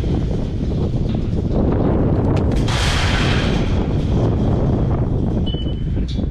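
Wind buffeting the microphone in a heavy, continuous low rumble, with a louder rush of noise about three seconds in.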